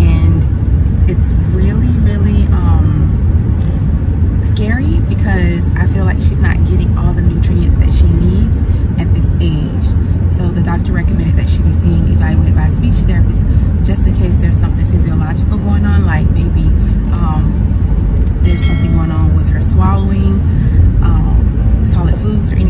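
A woman talking inside a car, over the car's steady low rumble.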